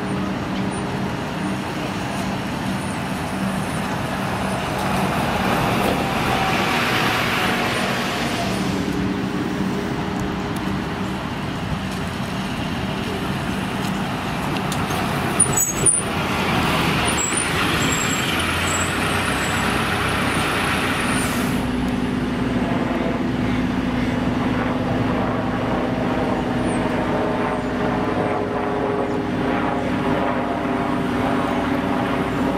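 Diesel buses running at a bus interchange, their engines humming steadily, with two long hisses of compressed air and a couple of sharp clicks about halfway. In the last third a bus engine grows louder as a bus pulls in close.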